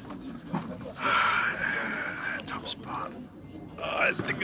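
A man's breathy laugh: a long airy exhale about a second in, followed by a few short clicks and breaths.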